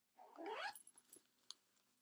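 A short, faint vocal sound about half a second in, its pitch rising steeply, followed later by a single small click.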